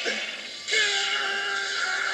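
Dramatic anime soundtrack music with a rushing noise, joined under a second in by a steady held note.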